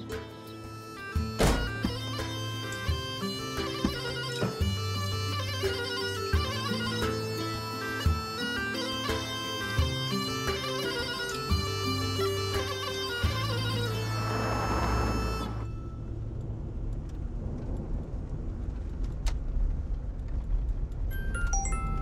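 Background music: a reedy, bagpipe-like wind melody over low sustained notes and percussion hits, ending in a swelling whoosh about two-thirds of the way in. For the last several seconds only a low steady rumble remains.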